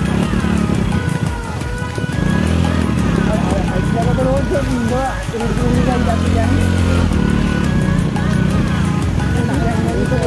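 A song with a singing voice over backing music, with a motorcycle engine running steadily beneath it.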